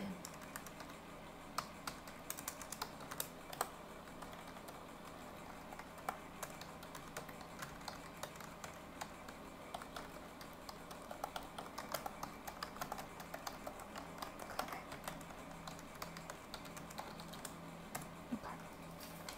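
Typing on a computer keyboard: irregular runs of key clicks with short pauses between them, over the steady noise of a fan.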